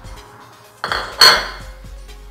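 Kitchenware clattering: a light knock a little under a second in, then a louder clink that rings briefly, as a ceramic plate and a frying pan or its lid are handled at the stove.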